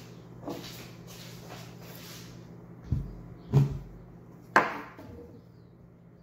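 A few sharp knocks and a click from a hand handling a white-and-green plastic diffuser prototype on a wooden table, after some soft rustling.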